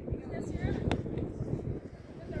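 A soccer ball kicked once on artificial turf, a single sharp thud a little under a second in, over distant players' voices calling out on the field.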